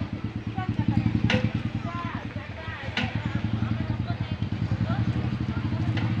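An engine running steadily with a fast, even low throb, under faint voices talking. Two sharp clicks, about one and three seconds in.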